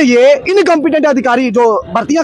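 Speech only: a man talking into a microphone, with no other sound standing out.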